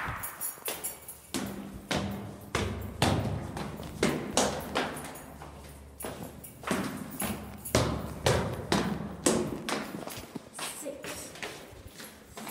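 Footsteps of sneakers going down concrete stairs, quick steps about two a second, with two short pauses.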